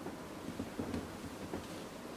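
Faint, soft rustling of a thick fleece wearable blanket hoodie as the wearer turns around, over quiet room tone.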